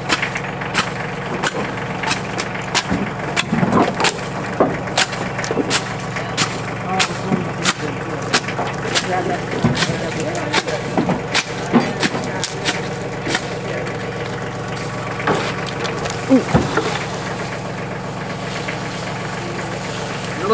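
Steady low hum of an idling pickup truck engine under frequent sharp clicks and knocks of a shovel working material in the metal truck bed and dry stalks being handled and cracked, with faint voices.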